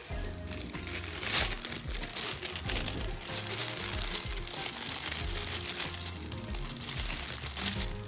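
A thin clear plastic bag crinkling and rustling as a chunk of bread is pushed into it and handled, with brief sharper crackles, over steady background music.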